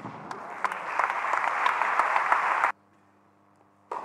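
Tennis crowd applauding in an indoor hall, growing louder, then cut off abruptly about two and a half seconds in. Near the end comes a single sharp racket-on-ball hit.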